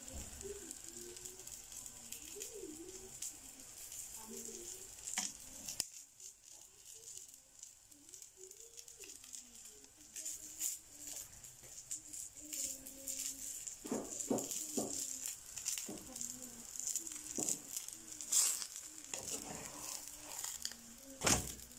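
Kefta-stuffed flatbread cooking in a nonstick frying pan: a faint steady sizzle with scattered crackles and pops, a few louder pops near the end.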